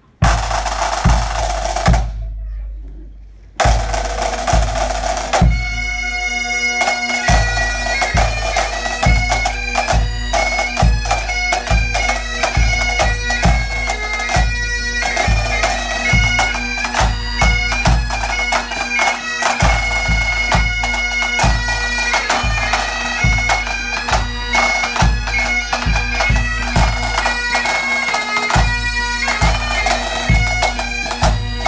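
Highland pipe band playing a snappy 2/4 march: bagpipes with steady drones under the chanter melody, snare drums, and a bass drum beating time.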